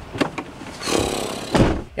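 A van door shutting with a thud about one and a half seconds in, after a short click and rustle as someone climbs into the seat.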